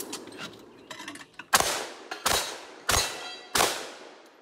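Light mechanical clicks, then four pistol shots about two-thirds of a second apart, each fading with a short echo.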